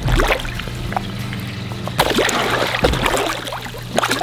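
Water splashing as a large catfish lunges at bait held in a hand at the pond's surface, with a burst of splashing about halfway through, under steady background music.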